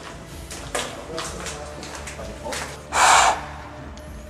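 Footsteps scuffing on a gritty floor as short faint clicks, then a loud brief rushing noise lasting under half a second about three seconds in.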